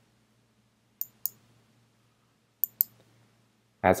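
Computer mouse button clicks: two quick pairs of sharp clicks, the first about a second in and the second about a second and a half later, as options are picked in a filter list.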